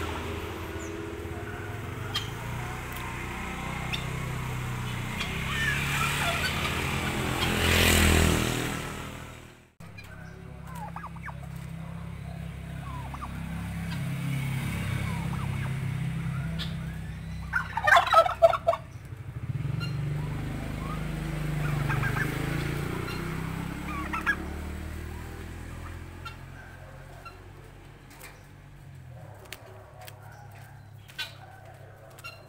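Domestic turkeys calling, with a loud, rapid burst of gobbling about halfway through.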